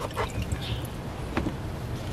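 Handling noise as clothes are pushed into the small plastic tub of a portable washing machine: light rustling, with a couple of short knocks, one near the start and one about a second and a half in.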